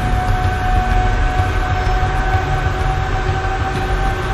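Steady, dense rumbling noise with a held high tone running through it.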